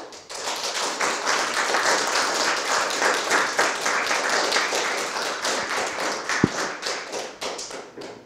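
Audience applauding, a dense clapping that thins out near the end. A single thump sounds about six and a half seconds in.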